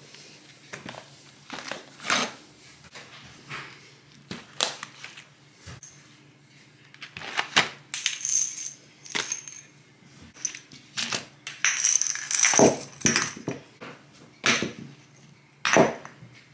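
Plastic tubs and small glass jars of mosaic tiles being handled, stacked and set down on a table: a string of irregular knocks and clicks, with brighter clinking of glass and tile pieces at a few points, loudest around two thirds of the way through.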